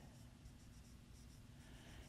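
Faint strokes of a marker writing on a whiteboard, over low room tone.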